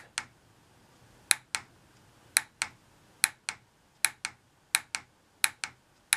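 Torque wrench clicking in quick pairs, about one pair every second, as it turns a hex shaft that is slipping in its wooden dowel at about 110 inch-pounds: the shaft's hold in the wood has given way.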